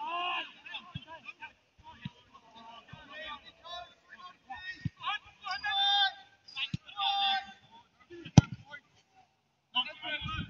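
Footballers' voices shouting and calling across the pitch, loudest a little past halfway, with a single sharp thud about eight seconds in.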